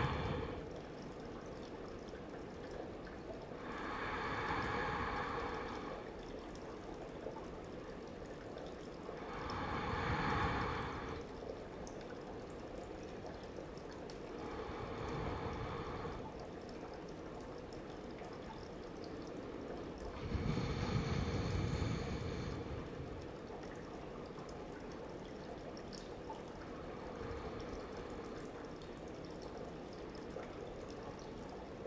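A person breathing slowly and deeply while resting in crocodile pose, one long soft breath about every five or six seconds, over a steady faint background hiss.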